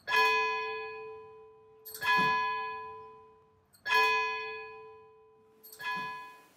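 A single church bell tolled four times, about two seconds apart, each strike ringing out and fading before the next.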